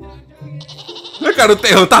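A man laughing loudly, the laugh starting a little past halfway through, over concert audio in which a crowd screams.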